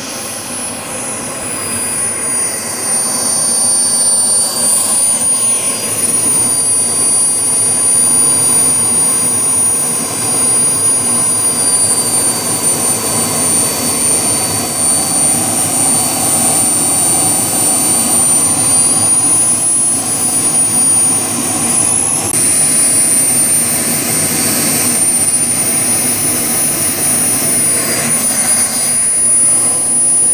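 Small gas-turbine engine of a radio-controlled Viper model jet running steadily while the model taxis, a high whine over a rushing exhaust noise. It grows louder over the first few seconds as the jet comes closer, and its pitch steps up slightly about two-thirds of the way through.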